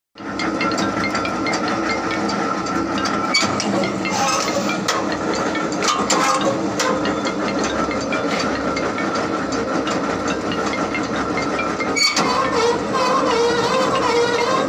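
Workshop machinery running steadily: a continuous mechanical noise with a steady whine and a lower hum, and scattered sharp clicks and knocks. A sharper knock comes about twelve seconds in.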